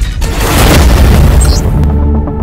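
Cinematic whoosh and deep boom of something rushing past at great speed, swelling loudly a moment in over trailer music. It gives way to a steady low music drone near the end.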